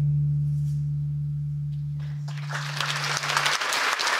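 The band's last low held note rings on and dies away, gone about three and a half seconds in. Audience applause breaks out about two seconds in and grows louder toward the end.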